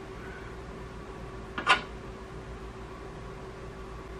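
Steady low hum with a faint steady tone from the powered-on 3D printer, broken by one sharp click about one and a half seconds in as its parts are handled.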